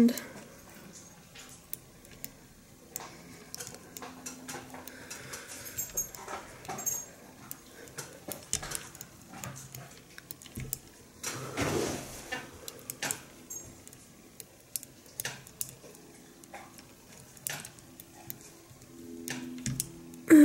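Quiet handling sounds: scattered small clicks and soft rustles as fingers work blue dubbing along a needle held in a fly-tying vise, with a louder rustle about twelve seconds in.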